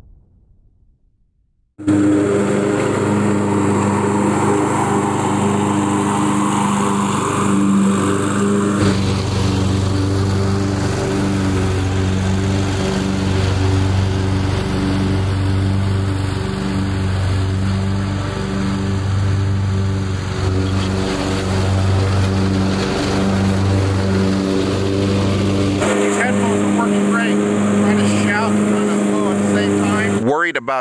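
Zero-turn riding mower's engine running steadily, starting about two seconds in after a brief silence. Its tone shifts at about nine and twenty-six seconds.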